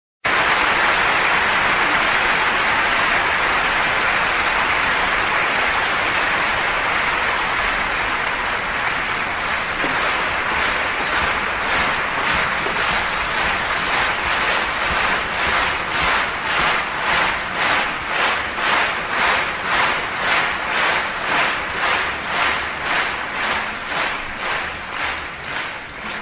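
Concert audience applauding, the even applause turning into rhythmic clapping in unison about ten seconds in, about three claps every two seconds, dying away near the end.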